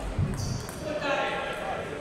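Ping-pong balls bouncing in a large, echoing table tennis hall, with a low thud just after the start. A voice calls out about halfway through.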